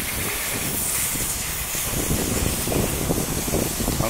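Steady hiss with a low rumble underneath: outdoor background noise, with no speech.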